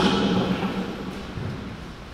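Quiet hall through a lectern microphone: a low rumble and hum, with the echo of a voice dying away in the first moment.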